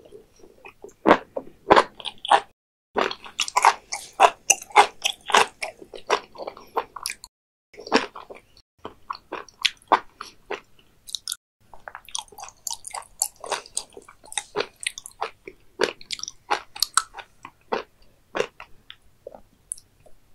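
Close-miked chewing of raw beef liver wrapped with raw beef omasum: a dense run of crunchy mouth clicks and smacks from the omasum, with two short pauses about seven and eleven seconds in.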